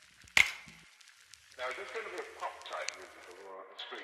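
A single sharp snip of scissors cutting through a sheet of craft paper about half a second in, followed by a faint voice in the background.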